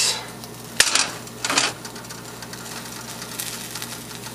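Cookware being handled: a sharp clack about a second in, then two short scraping rustles. After that comes a quieter stretch over a steady low hum, with no sizzling.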